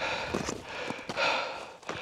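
A hiker's heavy breathing, two breaths, after a steep climb, with light footsteps on snow and rock.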